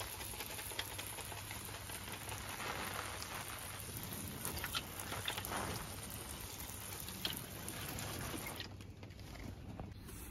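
Hand-held spray bottle misting water over trays of seedlings: a steady fine hiss with scattered light ticks, which stops about a second before the end.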